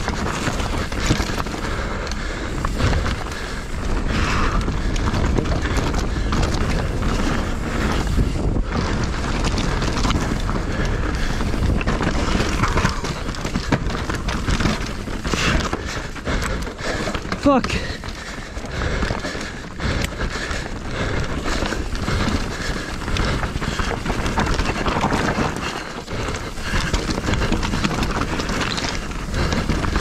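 A mountain bike ridden fast over rough trail: steady wind rush on the camera microphone, with continual rattles and knocks from the bike over the bumps.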